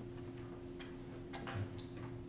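Room tone: a steady electrical hum with a few faint clicks, about a second in and again near the end.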